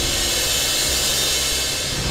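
Background drama score: a sustained, steady suspense chord with a hissing wash over it.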